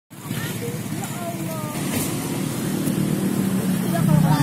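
Motor scooters running at low speed close by, a steady engine hum, with people's voices faintly in the background.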